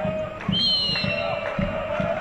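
A referee's whistle blows once about half a second in: a high, nearly steady tone lasting about a second that sags slightly in pitch, the signal that the free kick may be taken. Voices sound in the background.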